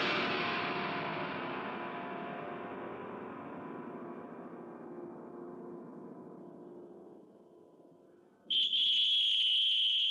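A sudden loud musical hit that rings on and fades slowly over about eight seconds. Near the end, a referee's whistle starts and is held long and steady: the final whistle ending the match.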